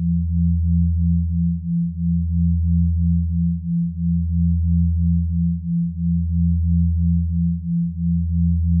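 Electronically generated sine tones of a binaural-beat track: a deep steady hum that dips briefly about every two seconds, under a higher tone pulsing about three times a second.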